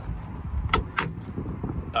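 Two sharp metallic clicks about a quarter second apart, from handling a race car's steering-wheel quick-release coupler and hub, over low handling rumble.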